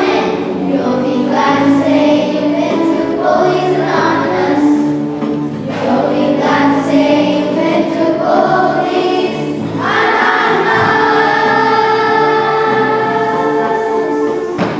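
Children's choir singing together, holding one long note from about ten seconds in.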